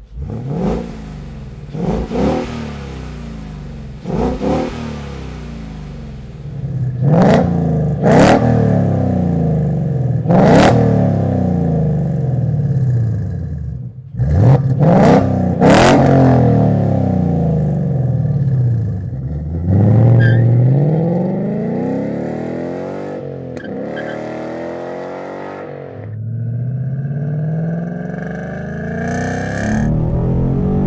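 A 2015–2017 Mustang GT's 5.0-litre Coyote V8 is revved in short blips and then longer, higher pulls through the stock exhaust. About halfway through, the same V8 is heard through a MAC 409-stainless cat-back with an X-pipe and straight-through Flow Path mufflers, with a deep, loud note as it revs and falls back. Near the end the engine note climbs steadily as the car accelerates under load.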